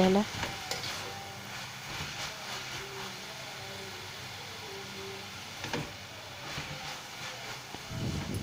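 Spinach and fenugreek leaves being stirred in a small pan with a metal spatula over a gas flame, the wilted greens sizzling softly in the water they have released. A few short clicks of the spatula against the pan come about six to seven seconds in.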